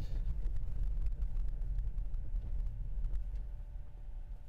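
Low rumble of a Tesla Model 3 rolling slowly over a snow-covered road, heard inside the cabin as the car slows, mostly tyre and road noise. It eases off slightly near the end.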